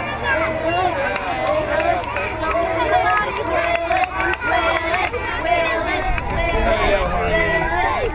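Crowd of children shouting and cheering at once, many high voices overlapping with no single speaker standing out, over a low rumble.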